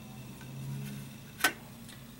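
A styrene model kit part clicking against the tabletop as it is set down: one sharp click about one and a half seconds in, with a few faint ticks before and after it. A steady low hum runs underneath.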